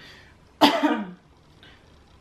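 A woman coughs once, a little over half a second in: a sharp start with a voiced tail that falls in pitch.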